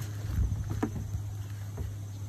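Goat hooves thumping and tapping on the metal hood of a mail truck, a cluster of heavier thumps about half a second in and lighter taps after, over a steady low hum.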